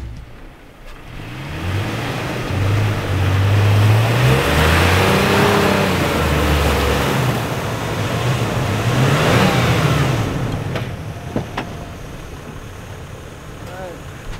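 Toyota Tacoma pickup's engine revving in two surges, rising and falling, over the rush of tyres spinning and churning through deep soft snow as the truck bogs down and gets stuck. The revving dies away near the end, followed by a couple of sharp clicks.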